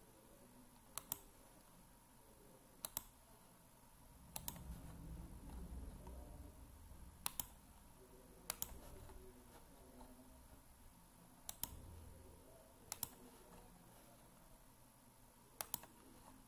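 Computer mouse buttons clicking: about eight sharp single clicks a second or two apart, a few of them quick double clicks.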